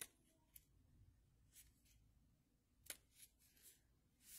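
Near silence with a few faint rustles and ticks of small paper handling, the sharpest about three seconds in, as the pages of a small card-deck guidebook are checked.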